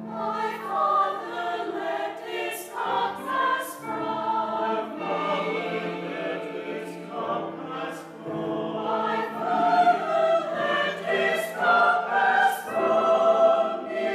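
Mixed choir of men's and women's voices singing a sacred choral piece, with crisp hissing consonants heard several times.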